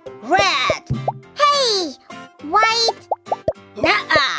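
High-pitched cartoon character voices making short wordless exclamations that slide up and down in pitch, over cheerful children's background music, with a few short plop sound effects between the calls.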